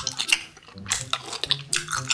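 Close-up wet chewing and mouth smacks of someone eating saucy rice cakes, with a few light clicks of a wooden spoon.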